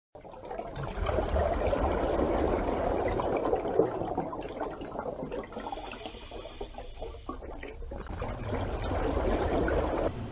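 Moving water, a steady rushing wash with small splashy streaks, that dips quieter a little past halfway and swells again near the end.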